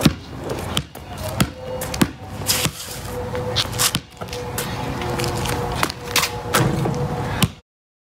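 A basketball being dribbled on asphalt, sharp bouncing thuds at uneven intervals. The sound cuts off abruptly near the end.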